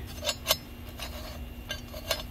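Light metallic clicks as the vane ring inside a Garrett VGT turbocharger's turbine housing is turned by hand, shifting the variable vanes: two sharp clicks about half a second in, then a few fainter ticks near the end.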